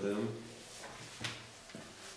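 A man's low voice briefly at the start, then the pages of a small paper book being handled, with two short sharp rustles about a second and a quarter in and near the end.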